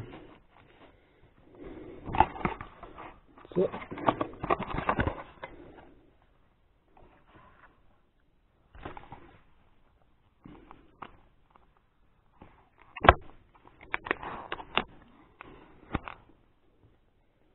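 Cardboard box and packaging being handled and unpacked by hand, with rustling and scraping in bursts and quiet gaps between. Late on comes one sharp click, followed by a few quicker clicks and taps.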